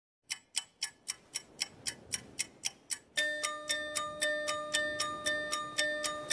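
Intro sound of a clock ticking at about four ticks a second. About three seconds in, a sustained chime-like chord joins it and the ticking carries on.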